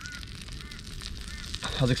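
A bird calling with short, repeated honking calls about every half second, over low wind rumble. Hardly any sizzle from the fish going into the butter.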